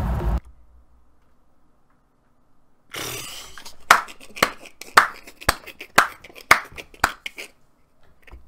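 A person clapping hands, about eight sharp claps roughly twice a second, starting about four seconds in after a near-quiet stretch. Before that, a loud rumbling sound cuts off about half a second in.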